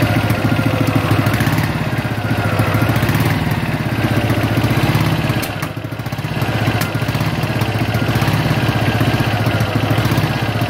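1954 Ariel NH 350cc single-cylinder four-stroke motorcycle engine ticking over at idle with a steady beat. The beat dips briefly about six seconds in, then picks up again.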